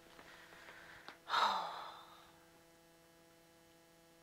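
A person's sudden loud breath, a sigh, heard close on a clip-on microphone; it comes about a second in and trails off over about a second, falling in pitch.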